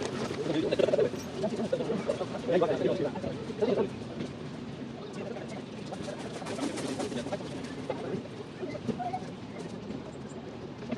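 Voices of people talking nearby, louder in the first few seconds, with a bird cooing now and then.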